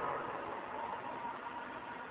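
Steady low hiss of background noise, with no distinct sound event.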